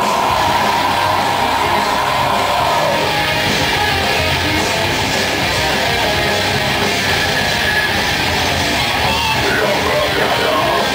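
A live metal/hardcore band plays with loud distorted electric guitars, bass and drums. A high note is held over the first three seconds or so.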